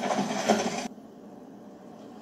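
Noisy scuffle commotion from a drama fight scene. It cuts off suddenly about a second in, leaving only faint room tone.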